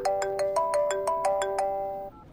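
Mobile phone ringtone playing a quick electronic melody of short, clear notes, about six or seven a second, that cuts off suddenly near the end.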